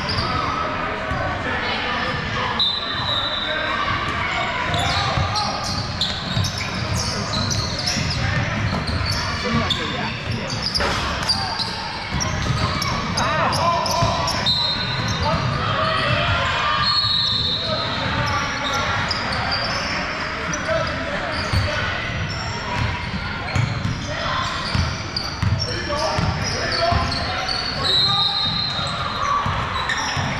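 Basketballs bouncing on a hardwood gym floor during play, echoing in a large hall, under a steady mix of indistinct players' and spectators' voices. A few short high-pitched squeaks come through now and then.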